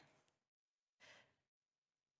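Near silence, with one short faint breath about a second in.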